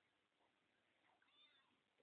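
Near silence, with a faint, short meow from a white domestic cat about one and a half seconds in.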